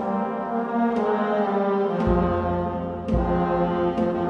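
Brass band playing a slow funeral march: sustained brass chords, a deep bass line entering about halfway through, and occasional drum strikes.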